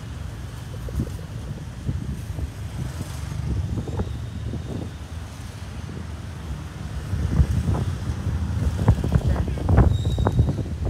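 Low, gusty rumble of wind buffeting the microphone, growing stronger over the last few seconds.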